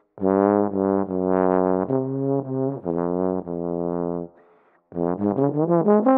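Solo trombone playing a slow phrase of long, low held notes, then after a brief pause a quick run of short notes climbing higher near the end.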